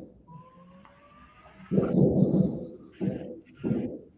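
Aerial fireworks exploding, heard through window glass as muffled low booms: a long rumbling one about two seconds in, then two shorter ones near the end. A faint rising whistle comes before the first boom.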